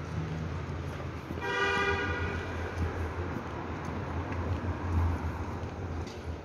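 A single short vehicle-horn toot, a steady pitched blast lasting well under a second, heard about a second and a half in over a steady low rumble.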